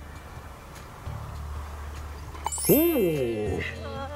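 A voice exclaims "Ooh!" in one loud call whose pitch rises and then falls, in reaction to a putt dropping into the hole. A low steady rumble runs underneath and grows louder about a second in.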